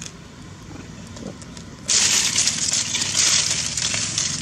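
A sudden loud crackling rustle starts about two seconds in and carries on, over a faint low hum.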